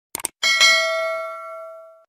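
Sound effect of a quick double mouse click followed by a notification-bell ding, which rings out with a slowly fading tone for about a second and a half before it is cut off.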